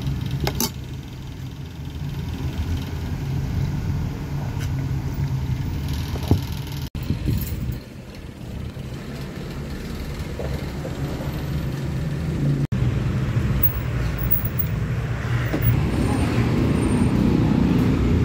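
Steady low background hum, giving way after a couple of cuts to road traffic noise from a nearby street that grows louder over the last few seconds.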